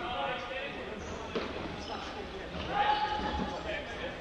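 Indistinct voices of players talking and calling out, echoing in a large sports hall, with a sharp knock on the hard floor about a second and a half in.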